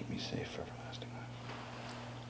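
A man whispering a few words quietly, stopping after about half a second, over a steady low hum.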